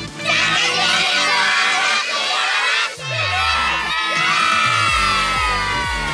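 A group of children shouting together twice, the second call drawn out and falling in pitch at the end.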